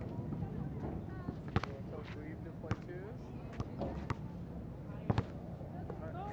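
Basketball bouncing on an outdoor asphalt court: a handful of sharp, irregularly spaced bounces, two of them close together near the end, with faint voices in the background.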